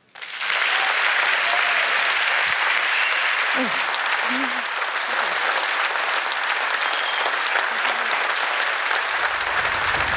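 Large theatre audience applauding steadily, with a few faint voices mixed into the clapping. Low music fades in near the end.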